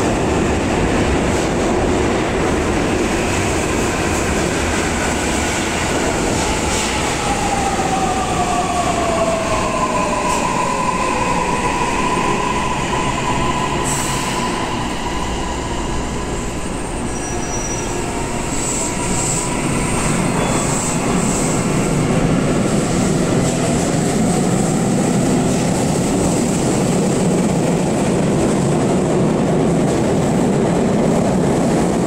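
Electric commuter train, with steady running noise and traction-motor whine. About six seconds in the whine falls in pitch as the train brakes, then holds a steady tone. From about twenty-three seconds a rising whine sounds as a train accelerates.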